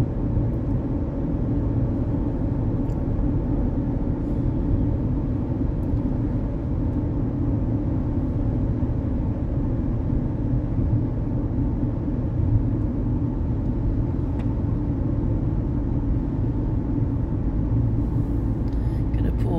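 Steady road noise inside a car cruising at highway speed: an even low rumble of tyres and engine heard from the cabin.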